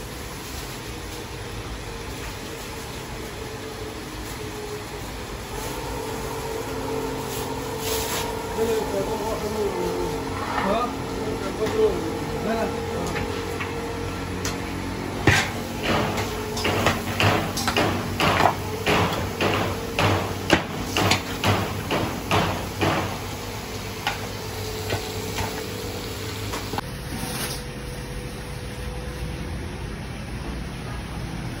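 Meat frying in a large steel cauldron under a steady hum, with a metal ladle knocking against the pot about twice a second for several seconds past the middle.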